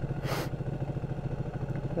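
Ducati 1299 Panigale's L-twin engine running steadily while riding in traffic, with a brief hiss about a quarter second in.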